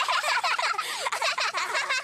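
Two young boys laughing together in cartoon voices, with fast overlapping giggles.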